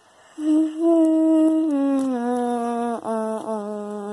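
A person's voice humming one long note that starts about half a second in, holds, then steps down in pitch in stages, with two brief breaks near the end: a vocal sound effect for the toy monster scene.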